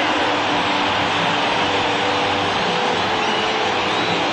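Large stadium crowd cheering steadily after the home team's extra-base hit, a dense even roar with no single voice standing out.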